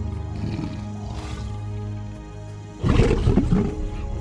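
Male lions growling and roaring as they fight, over steady background music; the loudest outburst comes about three seconds in.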